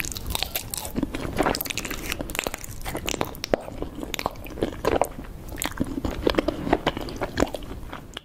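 Close-miked bites and chewing of raw honeycomb: a dense, irregular crackling and crunching of the wax comb, with sticky clicks between bites.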